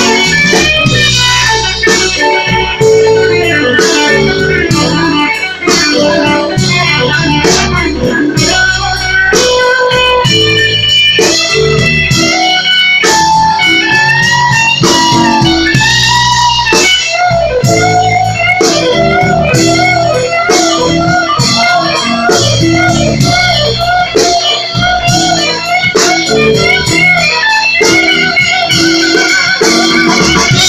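Live blues band playing: an electric guitar lead with bent notes over drums and keyboard, at full volume.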